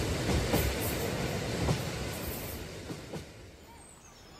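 A moving passenger train, a steady rumble of wheels on the rails, fading out over the few seconds.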